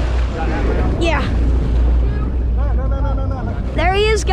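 Steady low rumble of the boat's engine running, with water splashing in the first second as the harpooned swordfish thrashes at the surface beside the hull.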